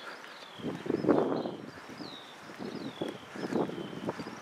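A bird calls over and over with a thin, falling whistle note, several times a second or so apart. Footsteps on wet tarmac and gusts of wind on the microphone come through as rougher thuds, loudest about a second in.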